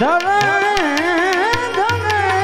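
Live Gujarati devotional bhajan: a male voice sweeps up into a long, wavering, ornamented sung note over the steady drone of harmoniums, with sharp percussion strikes from small hand cymbals keeping time.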